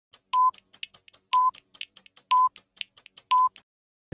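Countdown leader beeps: four short, steady 1 kHz tones, one each second. Short faint clicks and blips fall between the beeps.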